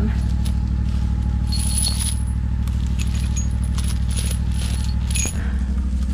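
A Ventrac compact tractor's engine idling steadily, with light metallic clinking and jingling as the Brush Grubber's hardware is handled and fitted around the stems.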